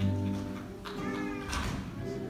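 A small vocal group singing live to strummed acoustic guitar, with a voice sliding in pitch about a second in and a sharp strum about halfway through.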